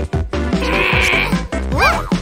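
Cartoon background music with a short hissing sound effect about half a second in, then a character's quick, wavering, bleat-like vocal noise near the end.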